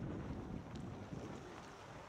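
Wind rumbling and buffeting on the 360 camera's microphone, fading as the skier slows down, with a few faint clicks.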